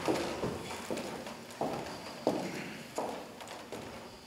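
Heavy footsteps on a stage floor, about seven loud steps at roughly half-second to 0.7-second gaps, each with a short echo in the hall.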